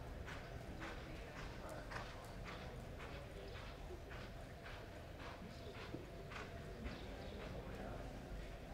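Horse's hooves striking soft dirt arena footing at a lope, a steady, faint rhythm of hoofbeats about two to three a second.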